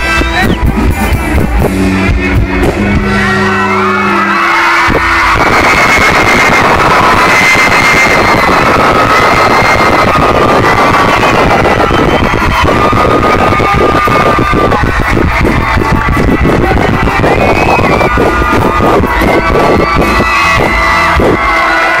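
A live band playing loud music with a singer; the bass drops out briefly about four seconds in and then comes back.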